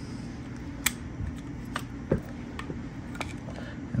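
A few short, sharp clicks of metal pliers against an aluminium e-bike controller casing as a part is worked into its channel, over a steady low hum.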